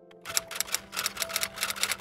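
A rapid, irregular run of sharp clicks, clacking like typing, starts about a quarter second in and runs over soft sustained background music.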